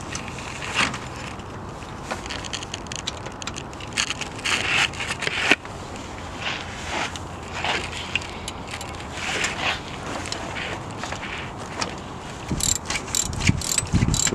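Hand work in a car's engine bay: irregular scrapes, knocks and rustling as tools and parts are handled around the alternator. Near the end a ratchet wrench starts clicking rapidly.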